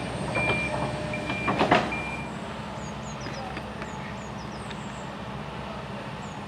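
Reversing alarm on construction machinery, a single-pitch beep repeating over the low running of its engine; the beeping stops about two seconds in, leaving the engine hum and a few faint high chirps.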